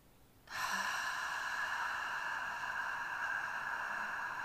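A woman breathing out slowly and steadily with a long "ffff" hiss, starting about half a second in: the controlled F-sound exhale of a diaphragm-strengthening breathing exercise.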